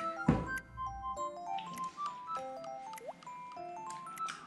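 Background music: a light chiming melody of single notes stepping up and down. A short thump sounds just after the start.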